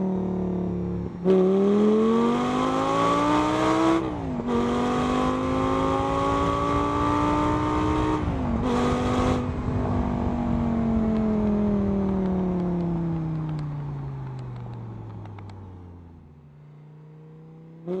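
Car engine accelerating up through the gears. The pitch climbs and drops sharply at each gear change, about four and eight and a half seconds in. From about ten seconds it falls away steadily as the car slows, fading low near the end.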